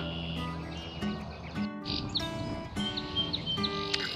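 Background music with sustained, layered held notes, dropping out for a moment a little before the middle.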